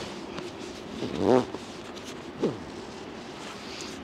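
Nylon webbing straps being cinched through buckles and fabric rustling as a down quilt is squashed in its compression sack. Two short vocal sounds of effort come through, one about a second in and a falling one about halfway.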